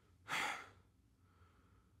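A man's single heavy breath, a short sigh, about a third of a second in.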